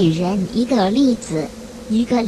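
A voice speaking, as in narration, over a faint steady hum.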